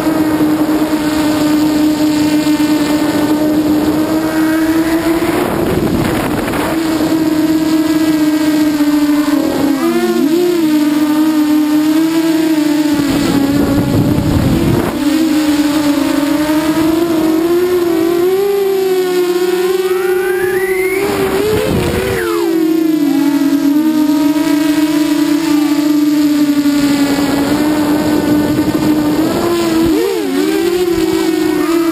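Walkera Runner 250 quadcopter's four electric motors and propellers whining, heard from its onboard GoPro: a loud, steady hum whose pitch dips and rises as the throttle changes, with a rising whine shortly before the twenty-second mark. Rushing bursts of wind and prop wash break in a few times.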